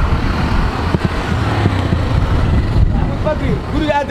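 Street traffic noise: a motor vehicle engine running with a steady low hum, with voices in the background near the end.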